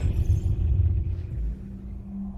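Deep, steady rumble of a logo-reveal sound effect, with a faint swish above it at the start, dipping a little in level near the end.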